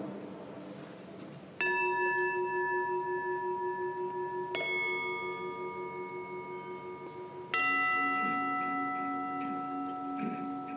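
A three-tiered brass gong bell struck with a mallet three times, about three seconds apart, each stroke at a different pitch and ringing on under the next, the last the lowest: the consecration bell rung at the elevation of the host.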